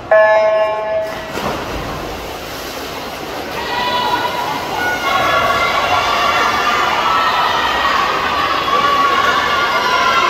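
Electronic swim-start signal: one steady beep of about a second as the race begins. Then splashing from swimmers in the pool, and spectators cheering and shouting that grows louder from about four seconds in.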